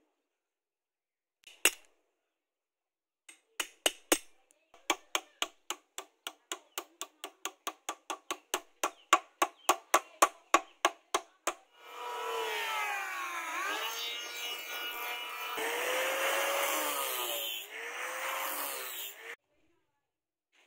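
Hammer tapping a metal ferrule down onto a wooden knife handle: one strike, then a steady run of light taps, about three a second. Near the end of the tapping a small electric power tool starts and runs for about seven seconds, its pitch sagging and recovering under load, then cuts off.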